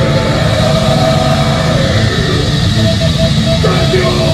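Symphonic folk metal band playing live at full volume: distorted guitars, bass, drums and keyboards in a dense, steady wall of sound, heard from the audience.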